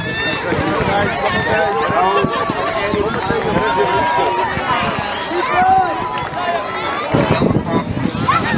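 Many voices shouting and calling out over one another, spectators and players at a youth football match, with a burst of louder shouts near the end.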